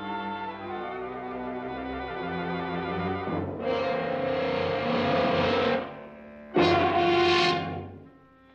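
Orchestral film score: sustained low chords build, then two loud brass blasts break in. The first lasts about two seconds; the second, shorter one comes near the end and cuts off sharply.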